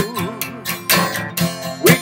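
Acoustic guitar strummed in a country song. The singer's last note wavers as it fades at the start, and the next sung line begins near the end.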